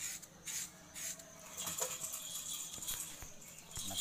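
Rustling and light scraping of hands moving over skin and paper and handling small objects, with a few soft clicks and taps.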